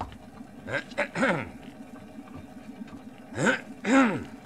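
Idling car engine as a radio sound effect, a steady low hum, with several short wordless vocal sounds over it, the loudest near the end.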